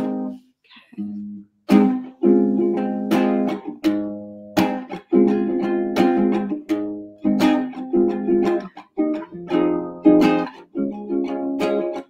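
Small acoustic guitar strummed in a steady rhythm of chords, the instrumental introduction to a song, with a brief pause about a second in.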